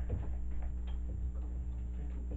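A low steady hum with faint, irregular small ticks and taps over it.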